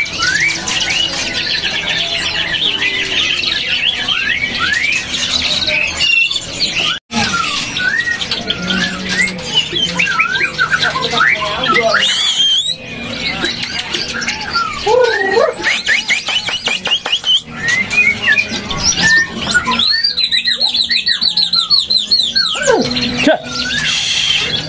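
Caged songbirds singing at close range, including white-rumped shamas (murai batu): a dense mix of loud, varied whistles, slurred glides and chirps. About twenty seconds in, one bird gives a fast trill of rapidly repeated notes.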